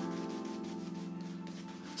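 Badger-hair shaving brush scrubbing shaving soap into a lather on a stubbled face: a soft, steady rubbing. Held background music chords sound under it.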